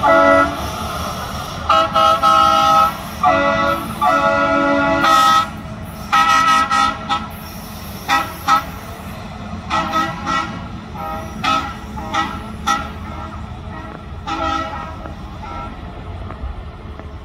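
Air horns on railway track maintenance machines sounding repeatedly: several blasts up to about a second long in the first seven seconds, then a string of shorter, fainter toots, over a steady low rumble.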